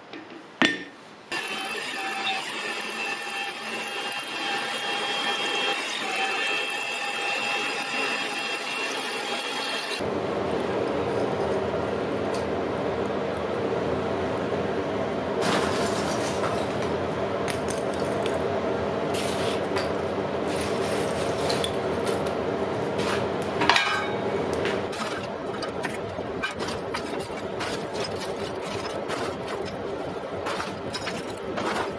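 A steel block clinks down on an anvil near the start. Then comes a steady machine hum, which changes to a lower hum about ten seconds in. Over it, lumps of charcoal clink and rattle as they are piled into a charcoal forge from about halfway on, with one sharper clink about three-quarters of the way through.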